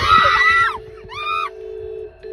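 A young woman screaming in terror: one long, high-pitched shriek, then a shorter one just after a second in, over a steady humming tone.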